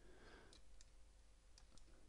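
Near silence with a few faint clicks of a computer mouse being used to navigate.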